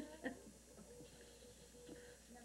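Near silence: room tone, with a brief faint voice sound right at the start.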